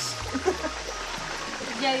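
Running water of a small mountain stream flowing through a shallow rock pool, under background music with a low steady bass note; a voice says a word near the end.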